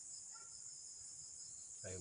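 Faint, steady high-pitched chorus of insects in the vegetation.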